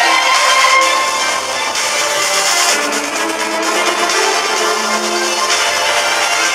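Electric violin played live, amplified through a PA, carrying a melody of sustained bowed notes.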